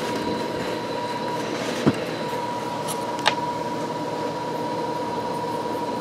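A steady mechanical hum with a thin high whine running through it, and two small clicks about two and three seconds in.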